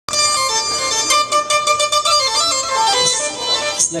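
Live band music at a club gig: a held, reedy keyboard or synth tone sustained over several notes, with a quick run of sharp percussive hits about a second in.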